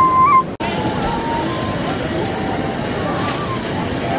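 A busker's recorder holding a high note that steps up at the end, cut off abruptly about half a second in. Then the steady noise of a crowded street-food market, with people talking.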